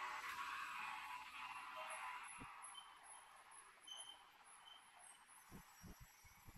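A vehicle passing on the street alongside, its quiet road noise swelling near the start and fading away over about three seconds. A few faint high chirps and soft thumps follow.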